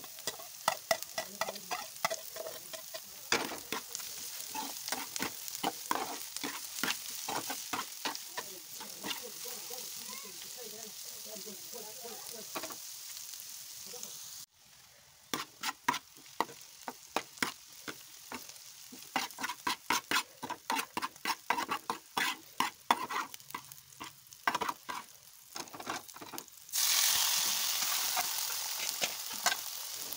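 Sliced bitter gourd and onions frying in oil in an aluminium pan, with a metal spoon clicking and scraping against the pan as they are stirred. A few seconds before the end a louder sizzle starts suddenly, as chopped tomatoes go into the hot oil.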